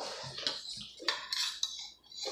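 Forks and spoons clinking and scraping against bowls of instant noodles as they are eaten, a few light, irregular clinks.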